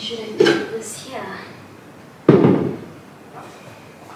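Decor pieces set down on a wooden shelf: a knock about half a second in, a brief voice sound after it, then a louder knock with a short low ring a little over two seconds in.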